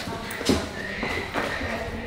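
Footsteps and thumps of people moving about on a wooden floor, two louder knocks about half a second in and near the middle, with voices underneath.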